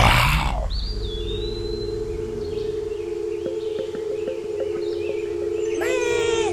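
A sudden swoosh-like hit, then a steady low drone of two held tones with a faint high whistle about a second in. Right at the end a sheep's bleat begins, its pitch falling.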